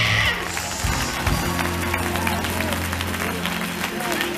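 Live gospel music: a woman's high sung note ends just as it begins, then the band holds a steady low chord. Hand claps and faint voices sound over it.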